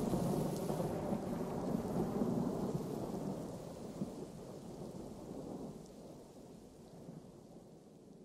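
Thunder-and-rain sound effect closing out an electronic track after the music stops: a low rumble over a rain-like hiss, fading away slowly.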